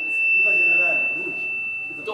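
Public-address feedback: a steady high-pitched ringing tone from the microphones and loudspeakers, with a man's voice faintly under it. It is the sign of the sound system turned up too loud.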